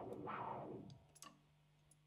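A short amplified instrument sound fading out about a second in, then a steady low amplifier hum with a couple of faint clicks.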